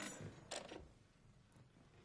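Cordless phone being picked up off a table and answered: two short handling clicks, about half a second apart, then quiet room tone.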